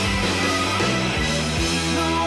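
Live rock band playing an instrumental passage, electric guitar to the fore.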